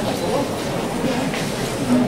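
Steady murmur of a street crowd, with low voices under a continuous noise haze.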